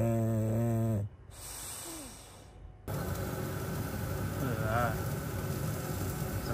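English bulldog snoring in its sleep: one long, low, drawn-out snore that stops about a second in. A quieter pause follows, then steady background noise from about three seconds on.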